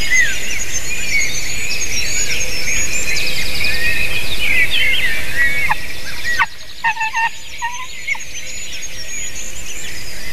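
Dense dawn chorus of many small songbirds, overlapping trills and chirps. About six and a half seconds in the background hiss drops off suddenly, and a few short, lower-pitched calls follow.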